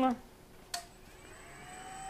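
ADEMS Pro 2 sharpening machine switched on with a click a little under a second in, its motor spinning up with a faint whine that rises in pitch and then holds steady, growing slowly louder. It drives a dry leather deburring wheel.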